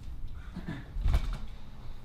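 Camera handling noise, low rumble and knocks as the handheld camera is swung around, with faint voices in a room behind it.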